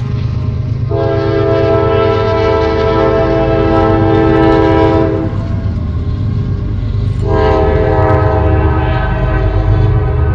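Locomotive air horn sounding two long blasts: the first from about a second in, lasting about four seconds; the second starting about seven seconds in and still going at the end. A steady low rumble of the train runs underneath.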